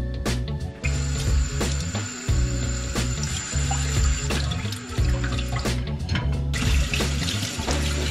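Kitchen tap running into a sink while dishes are washed under it. The water starts about a second in and breaks off briefly near six seconds, over background music with a steady bass beat.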